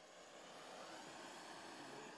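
Faint steady hiss of a handheld kitchen blowtorch flame, growing slightly louder.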